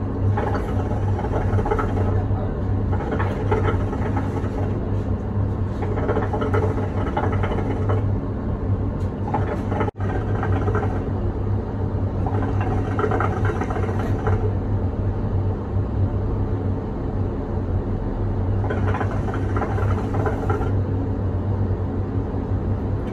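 Milk-filled hookah base bubbling as the smoker draws hard on the hose, in about four long pulls of a few seconds each.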